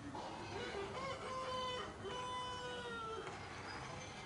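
Rooster crowing: a short rising start, then two long held notes, the second falling slightly in pitch.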